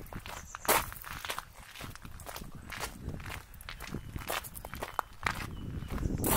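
Footsteps on gravel: a run of uneven steps as someone walks.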